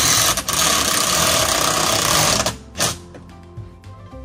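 Power drill running hard for about two and a half seconds as it drives into the house siding to fix an awning mounting bracket, then a short second burst.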